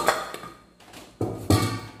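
Stainless steel grater and mixing bowl being handled and set down on the table: a series of sharp metal knocks and clatters, the last two, about a second and a half in, heavier and deeper.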